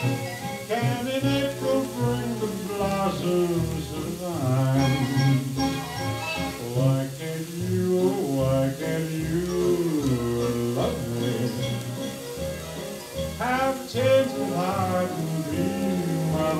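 Orchestral instrumental break of a 1950s pop ballad, played from a vinyl record, the melody carried with vibrato over a steady bass line and no lead vocal.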